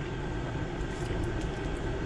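Steady low hum inside a car cabin, with no distinct events.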